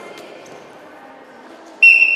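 Low gym-hall murmur, then near the end a loud, steady, single-pitch referee's whistle blast that stops a children's wrestling bout.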